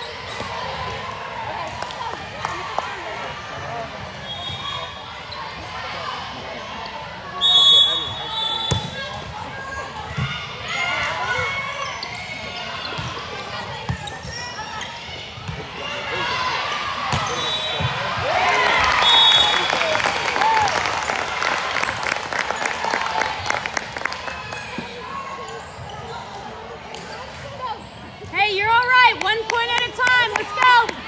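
Youth volleyball game in a gym: girls' voices calling and chattering over scattered ball hits and thuds on the court, with a loud impact about seven seconds in. Near the end the players shout and cheer loudly.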